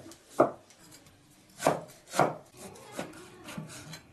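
Chinese cleaver chopping on a thick wooden cutting board: three heavy, uneven chops in the first couple of seconds, then a couple of lighter knocks.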